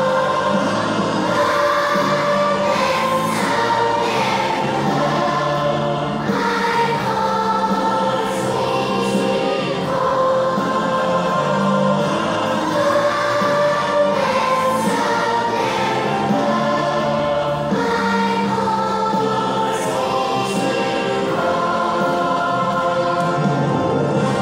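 A large choir of young children singing a song together on stage.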